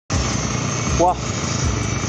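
An engine running steadily with a low hum under a constant hiss. A man gives a short exclamation, "wah", about a second in.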